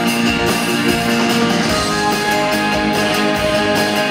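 Acoustic guitar strummed in a steady rhythm, the voice resting between sung lines.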